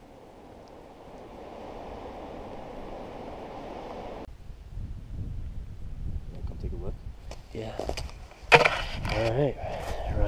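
Wind rumbling on the microphone, then a single sharp rifle shot from a 7mm Magnum about eight and a half seconds in, followed at once by excited voices. The shot is the one that dropped a bedded cow elk.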